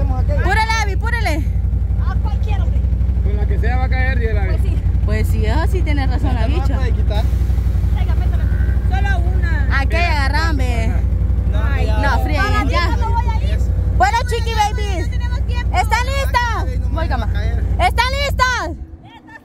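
Voices talking throughout over a steady low rumble.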